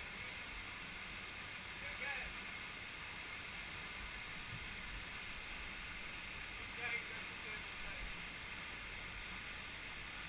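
Steady rush of a waterfall heard from a distance, with faint voices calling about two seconds and seven seconds in.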